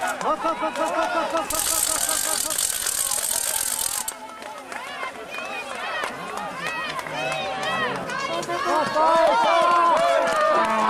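Spectators cheering and shouting encouragement, many short rising-and-falling shouts overlapping, loudest near the end. A hiss of high noise runs from about a second and a half in to about four seconds in.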